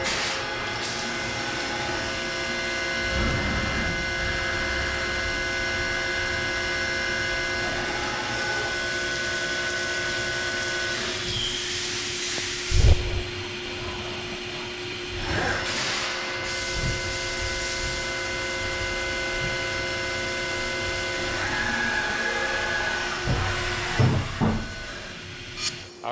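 CNC milling machine spindle spinning a Kennametal thread mill through its thread-milling path with the coolant off, a steady whine made of several tones. About halfway the higher tones drop out for a few seconds, with a single thump, then return.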